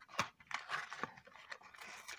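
Plastic and cardboard packaging of a toy car being handled and pried at: faint, irregular crinkles and clicks.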